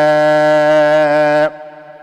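A man's voice chanting a xasida in Arabic, holding one long, steady note at the end of a line. The note stops about one and a half seconds in, and a short, much quieter gap follows.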